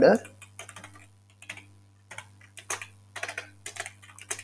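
Typing on a computer keyboard: irregular, quick keystroke clicks in short runs, over a faint steady low hum.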